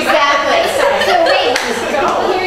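Indistinct speech: several people talking over one another.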